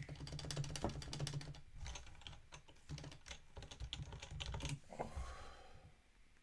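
Fast typing on a computer keyboard: a dense run of keystroke clicks with dull thumps underneath, stopping about five seconds in.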